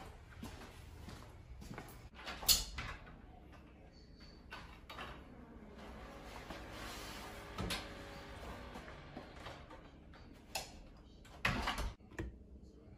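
A string of knocks and bumps: a sharp bang about two and a half seconds in, a few smaller knocks later, and a longer clatter just before the end.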